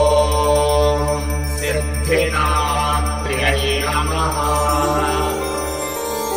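Indian devotional music: a woman singing a Sanskrit stotram over a steady low drone, with small bells tinkling. The voice bends through long held notes in the middle.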